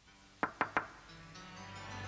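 Three quick knocks on a window pane, close together in the first second. Film score music then fades in and grows steadily louder.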